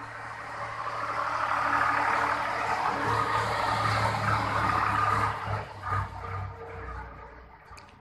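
A rushing background noise that swells over the first couple of seconds, holds, then fades away near the end, over a steady low hum.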